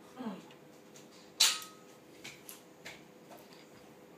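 Handling noises as a charger plug and cable are moved about: one sharp click about a second and a half in, then a few lighter ticks, over a faint steady hum.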